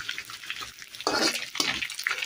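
Dried anchovies and sliced shallots sizzling in hot oil in a metal wok, stirred and scraped with a metal spatula. The sound is louder for a moment about a second in.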